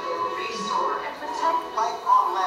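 Soundtrack of a projected video played in a hall: background music with voices speaking over it.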